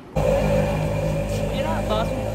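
Steady street traffic noise, a constant engine rumble and hum, beginning abruptly just after the start, with a voice briefly near the end.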